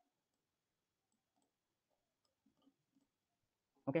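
Near silence with a few faint computer mouse clicks about two and a half to three seconds in.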